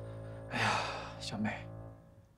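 A woman crying: two gasping, breathy sobs, one about half a second in and another just after a second, over soft sustained background music that fades out near the end.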